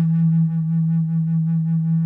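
Sub bass flute holding one long, steady low note on E.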